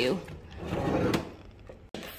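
A built-in under-counter fridge's cabinet door being pulled open: a brief rubbing rumble with a sharp click about a second in.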